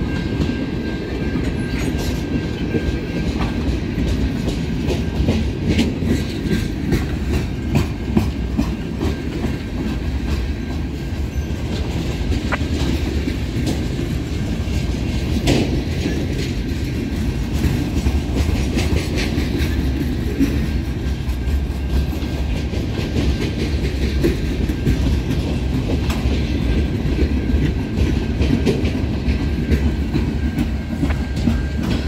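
Freight cars of a slow-moving CN freight train rolling past close by: a steady rumble with irregular clicks and clanks from the wheels over the rail joints.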